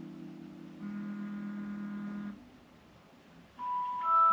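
Electronic tones: a low held tone fades out, a second held tone sounds for about a second and a half, then after a moment of near silence a phone alarm starts with a single high tone near the end.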